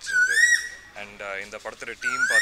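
A high whistling call that rises and then falls in pitch, heard once near the start and lasting about half a second. It is part of a call that repeats every second or two.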